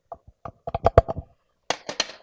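Marker writing on a whiteboard: a quick run of short taps and strokes as characters are written, densest from about half a second to a second in, with a couple more near the end.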